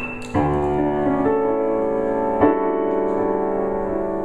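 Grand piano being played: chords struck about a third of a second in and again about two and a half seconds in, each left ringing.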